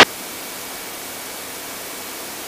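Steady, even hiss with no engine note or other events in it: the background noise of the aircraft's intercom audio feed between transmissions.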